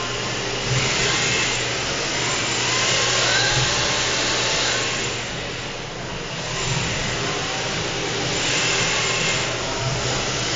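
Several rear-wheel-drive RC drift cars running a tandem on a smooth floor. Small electric motors whine up and down in pitch with the throttle over the hiss of hard tyres sliding. The sound fades a little about halfway through and builds again after.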